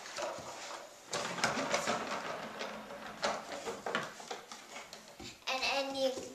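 Rustling and light knocks of a small child moving about, with a young girl's voice starting near the end.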